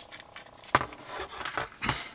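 Handling noise as a transistor dip meter is picked up from a cluttered bench: a sharp click about three-quarters of a second in, light rattling and scraping, and another click near the end.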